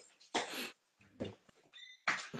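Faint sounds from a dog: a few short separate noises, then a brief high-pitched whine near the end.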